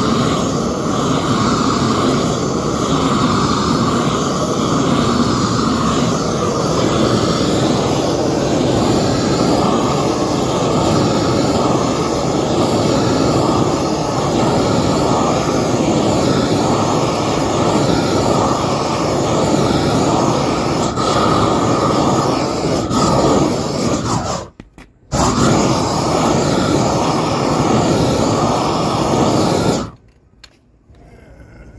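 Propane roofing torch burning steadily as it heats the underside of a roll of torch-on cap sheet: a loud, even rushing of flame. It breaks off for about half a second near the end, then carries on.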